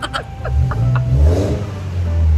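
Straight-piped exhaust of a gasoline Mercedes-Benz being revved in repeated blips, a loud, deep rumble that swells and falls back.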